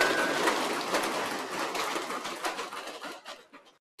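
A room of students applauding, the clapping dying away after about three and a half seconds.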